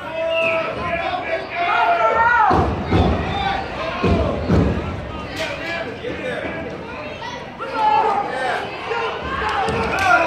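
Several voices shouting and calling out on a football field as a youth play is run, with a few low thuds between about two and five seconds in.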